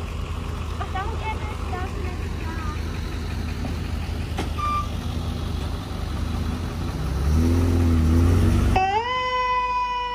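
Ambulances driving slowly past close by, engines running with a steady low rumble that grows louder as one passes. Near the end a siren comes on, rising quickly and then holding a steady tone.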